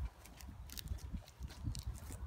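Footsteps crunching over dry straw stubble and soil, a few irregular steps, with a low uneven rumble on the microphone.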